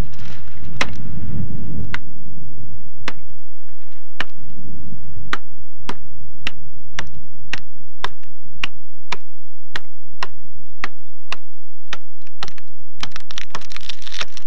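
Axe blows on wood, repeated sharp strokes at about two a second with a slightly uneven rhythm, over a low rumble.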